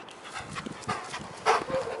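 A dog close to the microphone, making a string of short breathy sounds with a louder one about one and a half seconds in.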